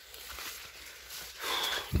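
Maize leaves and stalks rustling and brushing past while someone walks down a corn row, louder for a moment near the end.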